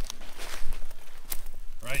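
Footsteps through dry rice stubble and straw, an irregular rustle with scattered sharp crackles.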